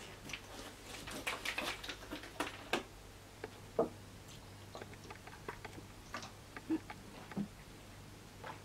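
Quiet handling of a water bottle close to the microphone: a quick run of small clicks and ticks as the cap is worked open, then scattered ticks and a few soft gulps as the water is drunk.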